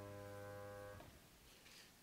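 The last held chord of a piano recording, fading slowly, then cut off abruptly about a second in, leaving near silence.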